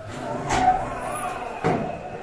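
Roofing work on corrugated metal sheeting, with the sheets being drilled for self-drilling screws: a steady rushing noise with two sharp knocks, about half a second in and near the end.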